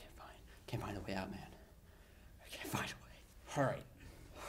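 Quiet, breathy, partly whispered speech from a person, in three short bursts with pauses between them. The words are too faint to make out.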